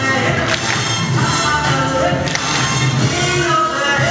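Music playing steadily with sustained melodic lines, and two short sharp cracks, about half a second in and a little after two seconds in.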